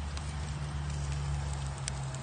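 Cedar planks smoking on a charcoal grill: a few faint crackles and ticks over an even hiss, with a steady low hum underneath.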